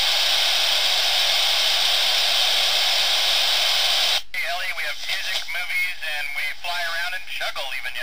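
Steady hiss from an amateur FM radio receiver with no signal, heard while the ISS downlink is unkeyed between exchanges. It cuts off sharply about four seconds in as the station transmitter keys up, and a man's voice follows over the radio.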